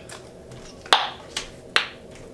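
A bubblegum bubble pops sharply just under a second in, followed by two more quick, sharp snaps of gum.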